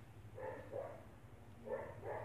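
A dog barking faintly in the distance: a few short, muffled barks, the first about half a second in and another near the end.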